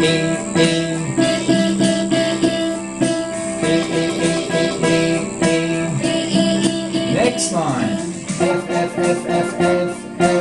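Classical guitars picking single notes in time over a backing track, with voices singing along. A falling swoop sounds about seven and a half seconds in.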